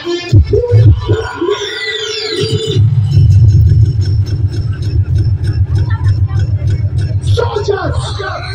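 Loud DJ music over a large outdoor PA system with a voice over the mix. A falling sweep effect comes about two seconds in, then a heavy bass beat kicks in about three seconds in. The voice returns near the end.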